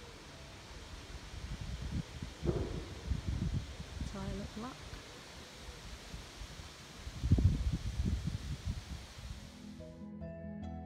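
Wind buffeting the microphone in irregular low gusts, strongest about two to four seconds in and again around seven to eight seconds, with a short voice-like call in the background about four seconds in.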